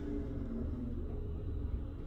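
Low, steady rumble inside a hydraulic elevator cab while the car is in travel.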